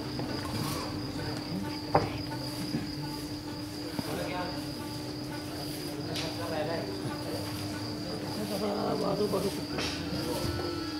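Crickets chirping steadily over a faint murmur of voices and a steady low hum, with one sharp knock about two seconds in.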